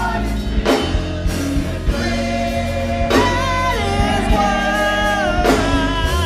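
Church choir singing a gospel song in long, wavering notes, backed by a band with bass, with a sharp hit about every two and a half seconds.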